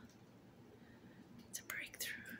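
Quiet room, then a brief whisper near the end.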